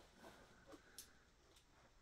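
Near silence, with a few faint clicks from a plastic box cutter working at the taped seam of a cardboard box.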